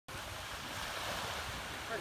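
Small waves washing in on the Georgian Bay shore, a steady wash, with wind rumbling on the microphone.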